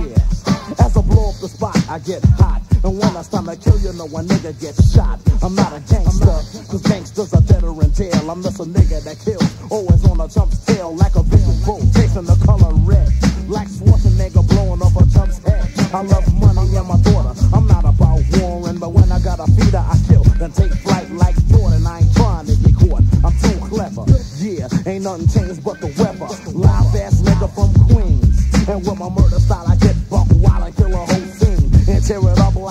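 Hip-hop track: a man rapping over a drum beat with heavy bass.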